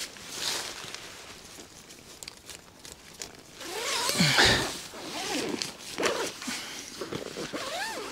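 A tent door zipper being drawn open in rasping pulls, loudest a little past the middle, with nylon fabric rustling as the inner door is handled.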